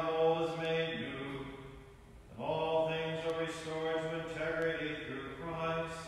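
A man chanting a liturgical text alone, on long held notes in phrases of two to three seconds with short breaks between them.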